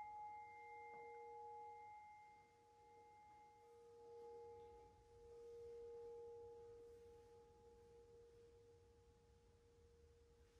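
Small metal singing bowl ringing out faintly after a strike, its low tone and higher overtones fading slowly with a slow swell and ebb.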